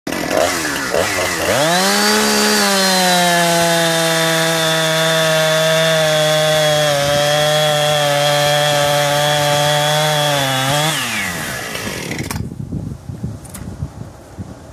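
Husqvarna two-stroke chainsaw with a 20-inch bar revving up and bucking through a log, held at high revs and nearly steady pitch under load for about nine seconds. Its revs fall about eleven seconds in as the cut finishes, and the sound stops abruptly soon after.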